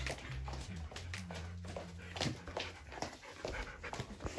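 A Siberian husky panting in short, irregular breaths close by, over background music with a low bass line.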